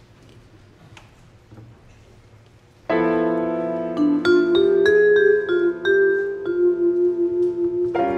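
Quiet room sound for about three seconds, then a chord on vibraphone and piano starts suddenly and rings on. The vibraphone plays a melody of single struck notes over it.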